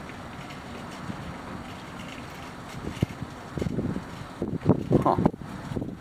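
A steady outdoor rush of wind on the microphone with distant traffic. In the second half there are a few soft knocks, and a muttered "huh" comes near the end.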